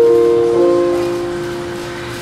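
Yamaha digital piano playing a slow instrumental intro: a held chord moves to a new chord about half a second in, then rings on and slowly fades.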